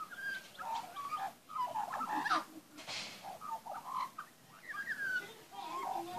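A young Australian magpie singing: a run of short warbled, gliding notes, with brief breaks between phrases.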